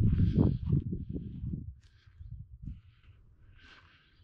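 Footsteps on dry forest ground as a person walks, a short scuff every half second or so. Low wind rumble on the microphone in the first second and a half.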